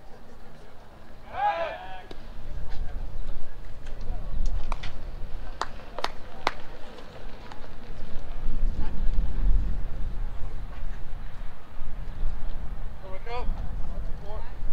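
Outdoor baseball field sound with low wind rumble on the microphone. A voice shouts briefly about a second and a half in, a few sharp knocks or pops come in quick succession around five to six seconds, and another short call is heard near the end.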